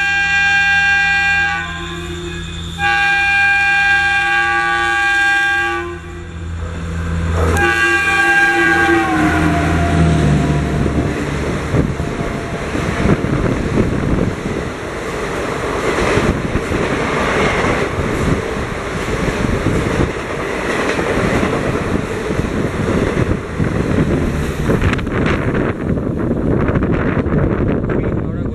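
Horn of a passing Indian Railways electric locomotive hauling the Garib Rath express through a station at speed: three chord blasts, the third dropping in pitch as the locomotive goes by. Then the coaches rush past with a continuous wheel-on-rail clatter, which fades near the end.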